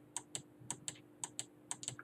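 Computer keys pressed in quick, irregular succession, about ten clicks in two seconds, as a document is paged through.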